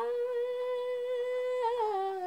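A woman singing unaccompanied, holding one steady sung note, then wavering and stepping down to a lower note near the end.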